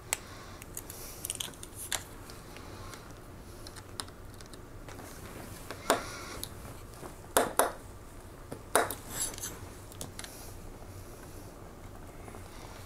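Small plastic model parts and tiny screws being handled and fitted together with a precision screwdriver, with sharp clicks and taps scattered every second or two, a quick pair of them a little past the middle.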